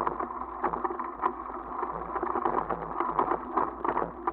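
Bicycle riding over a rough dirt track: a steady rolling noise of tyres on dirt and stones, broken by frequent irregular knocks and rattles as the bike jolts over the ruts.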